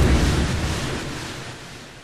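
Boom-and-whoosh sound effect for a logo reveal: a deep rumbling boom with a rushing hiss over it, fading steadily away.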